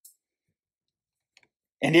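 Near silence in a pause between spoken sentences, with a faint click or two about a second and a half in; a man's voice starts again near the end.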